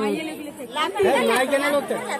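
Several people talking at once in overlapping chatter.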